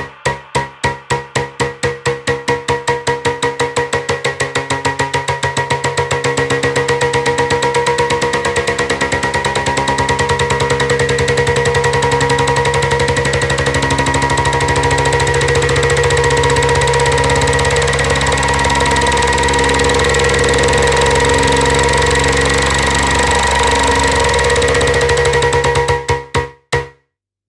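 House music played in a DJ set: a build-up in which a pulsing roll, about four strokes a second at first, speeds up and thickens over sustained synth tones as the level rises.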